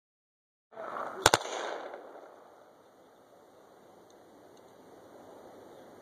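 M249 light machine gun (5.56 mm) firing one short burst from its bipod, about a second in: a few shots in quick succession, trailing off in echo over the next second. This is a three-round zeroing burst.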